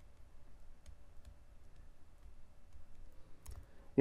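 Faint, scattered clicks of a stylus tapping on a pen tablet during handwriting, a few spread over the seconds, over low room tone.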